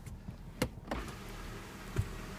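Power panoramic moonroof on a 2014 Nissan Rogue SV working: two sharp clicks, then from about a second in a steady electric motor hum as the glass panel slides.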